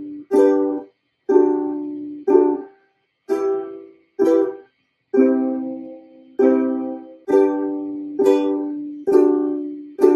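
Ukulele strummed slowly, one chord about every second, each chord ringing briefly and stopped short before the next, with a longer held chord about five seconds in.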